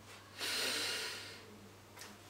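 A person breathing out hard through the nose: one breathy exhale of about a second, starting about half a second in and fading away.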